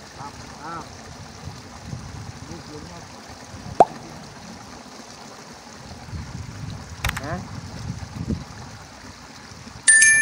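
Quiet outdoor background with faint murmured voices and one sharp click about four seconds in. A bright bell-like ding sounds right at the end.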